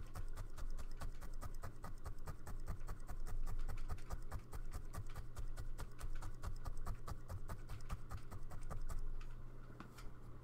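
A felting needle stabbed rapidly and repeatedly into wool roving on a felt backing over a felting mat, a quick even run of soft pokes, several a second, that stops about nine seconds in.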